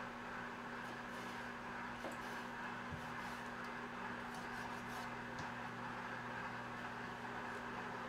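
Steady electric hum of a running microwave oven, with a few faint taps of a kitchen knife on a plastic cutting board as squid is sliced.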